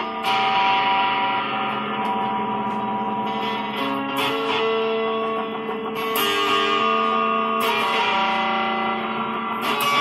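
Guitar music: chords struck about every one to two seconds and left to ring, with long sustained notes between.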